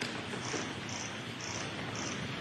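Courtroom room noise during a pause in the proceedings: a steady low rumble with faint rustling, and soft high hissing pulses repeating about twice a second.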